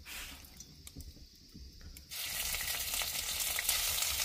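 Spices dropped into a little hot oil in a black iron wok over a wood fire: a loud sizzle starts suddenly about halfway through and keeps going as a spatula stirs them.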